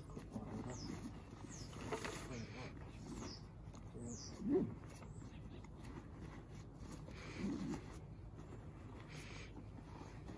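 Faint rustling and scraping of a Bushbuck Destroyer hunting pack's camouflage fabric and webbing straps as the hood is clipped over and the straps are pulled down. A few short high notes slide downward in pitch in the first half, and a slightly louder low scuff comes about halfway.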